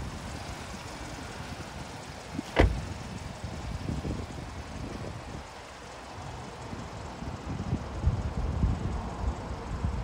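A Vauxhall Mokka's driver door is shut once, a single sharp slam about two and a half seconds in.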